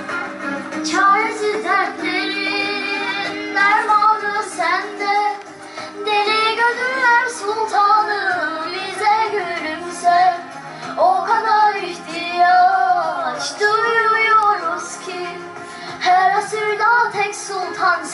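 A girl singing a Turkish Islamic hymn (ilahi) solo into a microphone, her voice amplified, in long ornamented phrases that waver up and down with short breaks between them.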